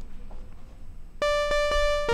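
Imaginando DRC software synthesizer playing a single bright, buzzy note with many overtones, played from a keyboard. It starts suddenly about a second in and holds steady, with a couple of faint re-attacks.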